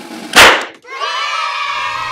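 A balloon pop sound effect: one loud, sharp burst about half a second in. It is followed by a held, slightly wavering pitched tone with many overtones.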